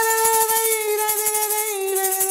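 One voice singing a single long held note that sags slightly near the end, over a handheld plastic rattle shaken steadily and fast.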